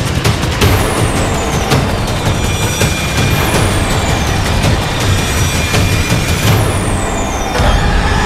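Dramatic TV-serial sound effects: three swooshing sweeps, each falling steeply in pitch, about three seconds apart, over a dense noisy bed with a low pulse.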